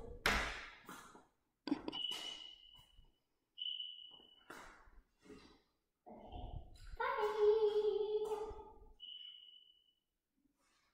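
Glass-paned double doors being swung shut, with a knock about two seconds in and a few short, high squeaks that fade out. A child's drawn-out vocal sound lasts about two seconds near the end.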